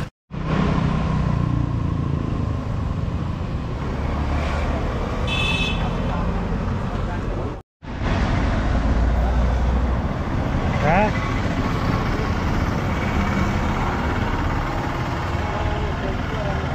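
Steady road traffic noise from passing vehicles, with low engine rumble, cutting out briefly twice.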